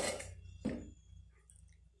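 Two short metallic clicks about two thirds of a second apart, from an aluminium pressure cooker's lid being unlocked and lifted off.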